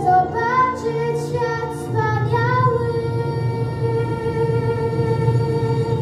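A girl singing into a microphone over a backing track: a short melodic phrase, then one long held note lasting about three seconds.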